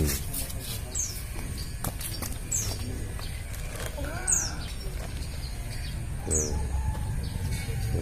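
A small bird calling, repeating a short, high, downward-sliding chirp every second or two.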